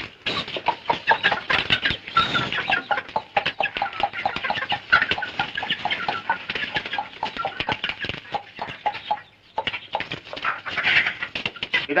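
Chickens clucking and cackling in a rapid, continuous run of short calls, with a brief pause about nine seconds in before the calls resume.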